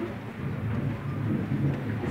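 Indistinct background noise of a large hall full of people, with a steady low hum under it and no clear voice or music.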